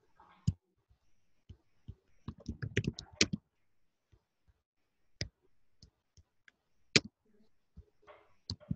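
Computer keyboard and mouse clicks: a single click, then a quick run of keystrokes about two to three seconds in, then separate clicks spaced out near the end, the loudest about a second before it ends.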